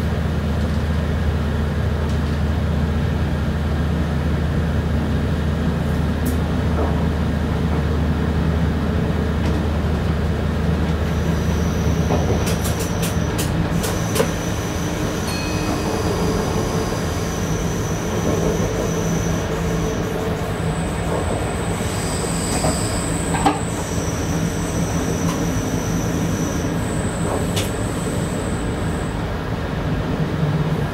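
A diesel train running, heard from the driver's cab. A steady low engine drone drops away about twelve seconds in. Then the wheels squeal high-pitched on the curve, several whistling tones coming and going, with a few sharp clicks from the rails.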